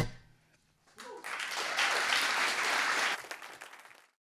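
The song's last guitar and vocal sound cuts off at the start; after a short silence an audience applauds for about two seconds, then the applause fades out near the end.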